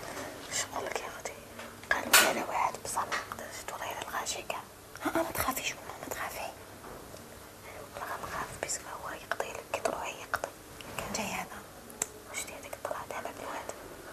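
Hushed whispered speech, with breathy, hissing consonants coming in short broken phrases throughout.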